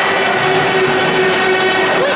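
A horn holding one steady note over the noise of a hockey arena crowd, cutting off at about two seconds.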